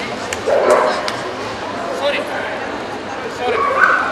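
A dog barking twice, once about half a second in and again near the end, over the steady chatter of a busy show hall.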